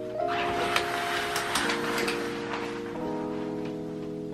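A shower curtain being pushed aside: a rustling, hissing sweep with a few sharp clicks lasting about three seconds, over background music with sustained notes.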